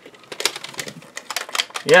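A quick, irregular run of plastic clicks from a Nerf Rival blaster as its safety switch is worked.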